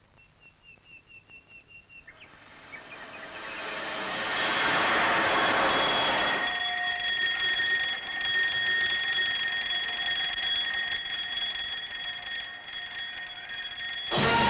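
A bird chirping in short repeated notes, about four a second, then a train approaching: a rushing rumble swells over a few seconds, and about six seconds in the train's horn sounds, held steady for around seven seconds over the rumble.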